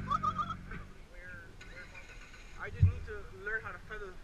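Voices shouting at a distance, with a motor running that stops within the first half second and a single thump about three seconds in.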